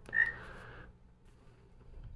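A short whistle-like note at a single pitch that fades out within the first second, followed by faint room noise.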